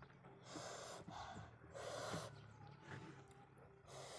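A person's sharp, noisy breaths through the mouth while eating, three in quick succession, the loudest about two seconds in.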